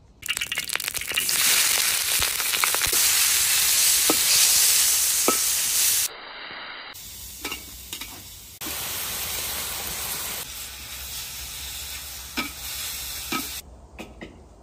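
Food frying and sizzling in a wok over a wood fire, with a few sharp clinks. The sizzle starts suddenly and is loudest for the first six seconds, then goes on more quietly.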